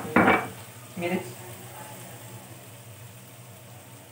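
Onions and tomatoes frying in oil in an aluminium pot, a faint steady sizzle under a low steady hum. A spoon knocks sharply against the pot once at the start.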